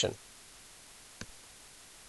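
A single short click about a second in, over quiet room tone; most likely a computer mouse button being clicked.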